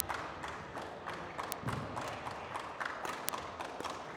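Scattered sharp clicks of badminton rackets striking a feather shuttlecock, the clearest about one and a half and three and a quarter seconds in, over the low background noise of a sports hall.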